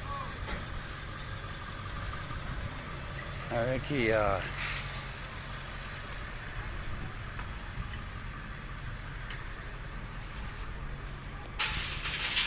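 A long train of nested metal shopping carts rolling over parking-lot asphalt, a steady low rumble and rattle of casters and wire baskets, breaking into loud clattering shortly before the end.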